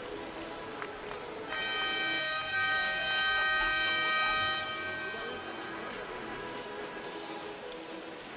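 Arena game buzzer sounding one long, steady electronic tone for about three seconds, over crowd chatter in the gym. It starts about a second and a half in, gets louder partway through and cuts off near the middle, marking the end of the half-time break before the third quarter.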